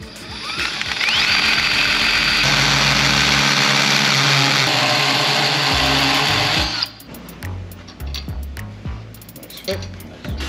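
A power tool spins up with a rising whine and runs steadily for about six seconds, widening a slot with a bit about the size of the bolt so the bolt will fit, then cuts off suddenly.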